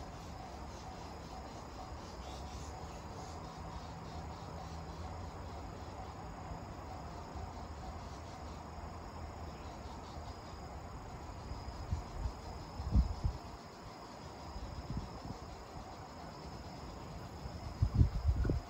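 Insects, crickets, chirping steadily in trackside grass. A few brief low thumps break in about two-thirds of the way through and again at the very end.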